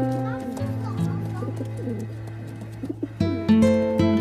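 Domestic pigeons cooing with short wavering calls through the middle, while background music with long held notes plays throughout and eases off while the birds call.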